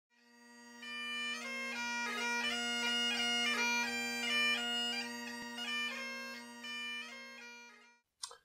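Great Highland bagpipe playing a short melody over its steady drones, fading in at the start and fading out near the end.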